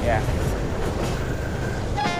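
Passenger train running, heard from inside the carriage: a steady low rumble from the wheels and track, with a faint steady whine in the second half.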